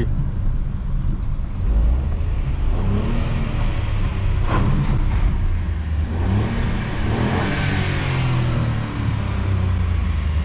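Ford Ka's 1.0 three-cylinder petrol engine revving up under hard acceleration in a low gear, heard from inside the cabin in a tunnel. Its note rises as the revs climb.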